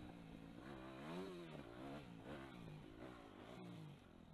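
Yamaha YZ250F's 250cc four-stroke single-cylinder engine being ridden on a dirt track, revving up and falling back in pitch about three times as the throttle is worked.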